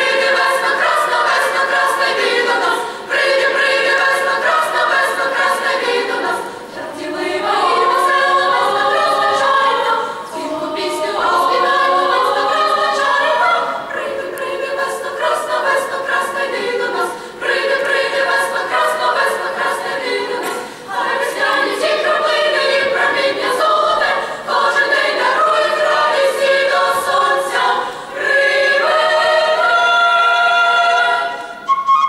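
Youth choir singing a song in several parts, in phrases with short breaks between them.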